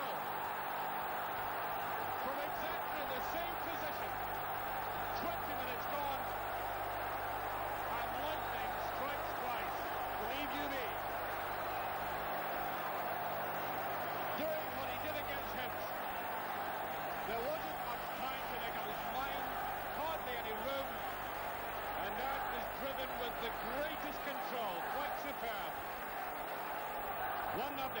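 Large football stadium crowd cheering and shouting after a goal, a dense steady roar of many voices with no single voice standing out.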